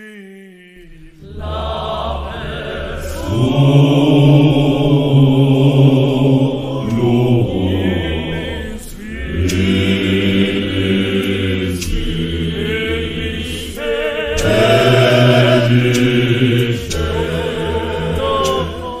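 Zionist church choir singing a hymn in harmony over a steady low bass, starting about a second in after a quiet gap.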